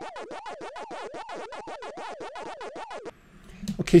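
Retro 8-bit, arcade-style electronic sound effect: a pulsing bleep that warbles up and down in pitch about three times a second, then cuts off suddenly about three seconds in.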